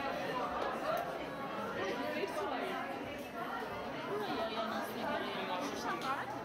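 Crowd chatter: many people talking at once, overlapping and unintelligible.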